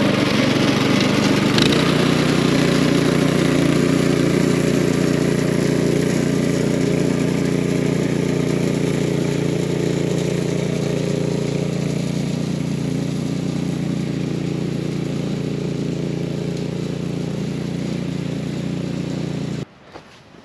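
Yardmax rear-tine tiller's gas engine running steadily under load as its tines and a hiller-furrower attachment dig a trench. The sound slowly fades as the tiller moves away, with a brief knock a couple of seconds in, and cuts off suddenly near the end.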